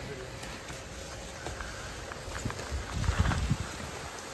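Skis sliding and scraping on packed, groomed snow, with a few faint clicks. About three seconds in, a louder low rumble of wind on the microphone.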